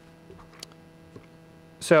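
Steady electrical hum from the room's microphone and sound system, with a few faint clicks.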